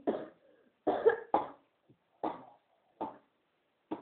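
A woman coughing repeatedly: about six short, separate coughs spaced a half second to a second apart.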